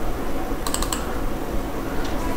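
A quick run of about four computer keyboard key clicks a little under a second in, over a steady low background hum.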